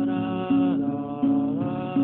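Acoustic guitar strummed in a slow steady rhythm, a stroke about every two-thirds of a second, under a long held sung vocal note that dips and then rises in pitch.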